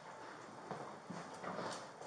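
Faint footsteps and light knocks on a hard floor, a scattered series of small clicks with no talking.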